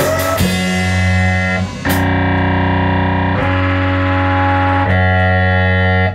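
Live rock band: drums stop about half a second in, leaving long sustained chords on distorted electric guitar with keyboard, the chord changing about every second and a half, four chords in all.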